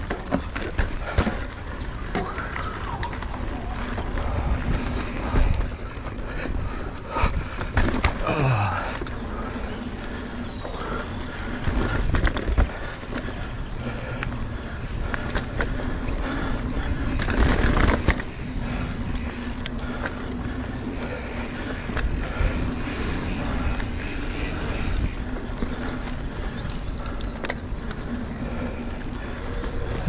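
A mountain bike ridden along a dirt singletrack trail: tyres rolling over dirt and roots, with frequent knocks and rattles from the bike as it hits bumps.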